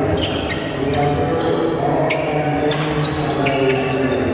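Badminton rackets striking a shuttlecock in a fast rally: a string of sharp hits about every half second, with short high squeaks from shoes on the court floor. A crowd's voices carry on underneath.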